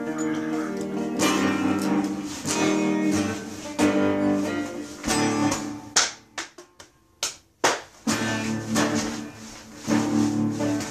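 Electric guitar strummed hard in chords. A little past halfway the chords break into a few short, choppy stabs with brief silences between them, and full strumming picks up again near the end.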